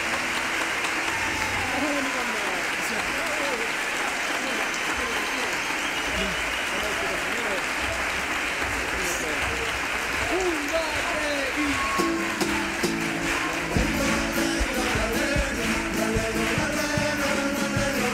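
Theatre audience applauding and cheering loudly after a carnival comparsa's performance, with voices shouting through the applause. About twelve seconds in, instrumental music comes in under the ovation.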